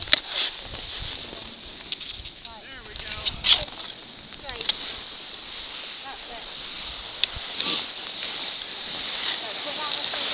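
Skis scraping and hissing over packed snow, the hiss growing louder toward the end, with several sharp clicks and faint voices.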